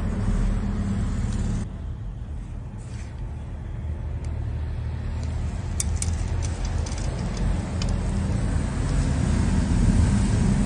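Steady low background rumble with no speech, with a few faint ticks about six seconds in.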